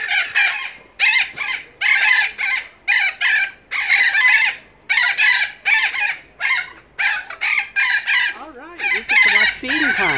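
Captive birds in an aviary screaming: loud, harsh calls repeated one after another, about two a second. A lower wavering sound joins near the end. The calling may be because the birds are waiting to be fed.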